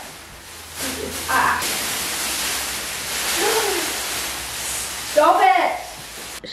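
Large sheet of clear plastic wrapping rustling and crinkling steadily as it is pulled off a new upholstered armchair, with a short burst of a woman's voice about five seconds in.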